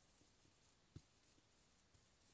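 Faint strokes of a dry-erase marker writing on a whiteboard, with a soft knock about a second in.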